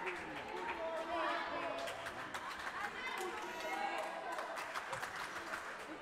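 Sports-hall crowd ambience: distant voices of players and spectators calling out, with scattered light footsteps and clicks on the wooden court.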